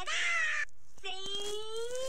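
A short raspy shriek, then a long, high, drawn-out voice-like cry that rises slowly in pitch.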